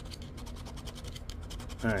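A scratcher coin scraping the coating off a scratch-off lottery ticket in rapid back-and-forth strokes.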